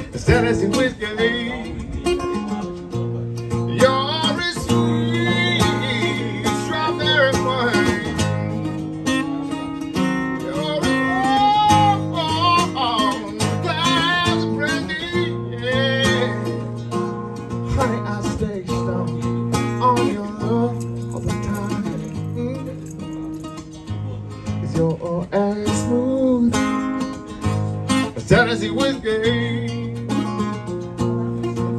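A man singing to his own strummed acoustic guitar, played live through a microphone and PA speaker.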